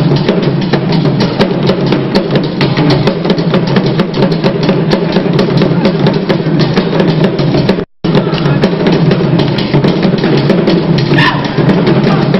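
Drum-led percussion music playing a fast, even beat, with many strikes. The sound cuts out for a moment about eight seconds in.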